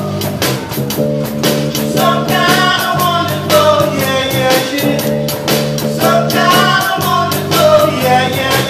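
Live rock band playing: a drum kit keeping a steady beat under electric bass, with a male lead singer singing.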